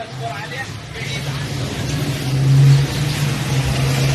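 A motor vehicle in the street below, its engine hum steady and swelling to its loudest a little past halfway through, with a haze of traffic noise over it.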